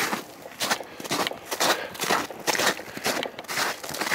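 Footsteps on a snow-covered dirt track, about two steps a second.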